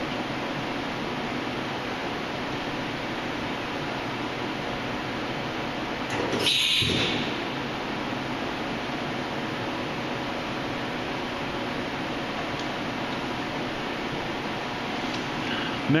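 The pneumatic tool release of a Haas Super Mini Mill 2 spindle firing once, about six and a half seconds in: a short rush of air of under a second as the drawbar lets go of the tool holder. A steady background hum runs under it.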